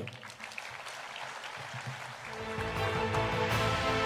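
Audience applauding as a speech ends, with music coming in about halfway through, carrying a steady bass and growing louder.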